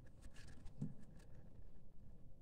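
Faint, scratchy rustling of paper yarn being worked with a metal crochet hook, the stiff yarn scraping as loops are pulled through single crochet stitches, with a soft thump a little under halfway.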